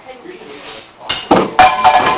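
A monkey-and-hunter demonstration apparatus firing and its projectile striking the falling target: a few sharp, loud knocks and a clatter starting just after a second in, followed by a ringing tone.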